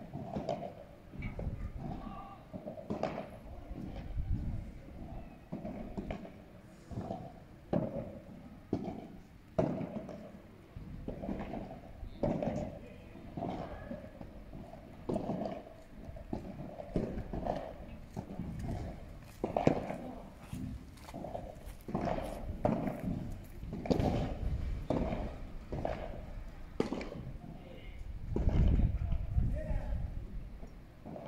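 Padel rally: the ball struck back and forth with solid padel rackets, sharp pops at irregular intervals of one to a few seconds.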